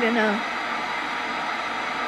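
Steady static hiss from a portable radio used as a spirit box.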